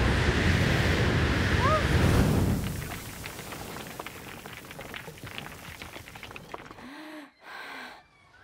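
Animated-film sound effects: a loud rushing noise that fades out about two and a half seconds in, then a scatter of many small crackling clicks as the character's body breaks into fragments.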